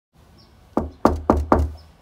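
Four knocks on a panelled front door, the first about three quarters of a second in and the next three in quick succession.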